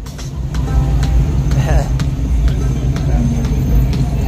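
Low, steady engine rumble from a hot-rodded Ford sedan as it rolls slowly away down the street, with music playing in the background.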